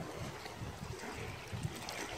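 Seawater washing gently against rocks, with low rumbling from wind on the microphone.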